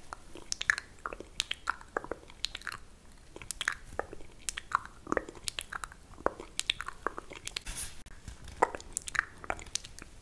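Crumpled paper tissue scrunched and rubbed close to the microphone: a dense, irregular run of small crinkles and crackles.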